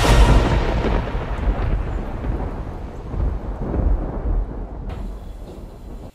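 Thunder sound effect: a loud, deep clap at the start that rolls away and fades over about five seconds, then cuts off abruptly.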